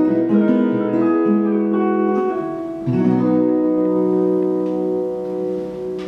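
Acoustic guitar and electric guitar playing together without singing. They change chords over the first few seconds, then strike a final chord about three seconds in and let it ring out, slowly fading.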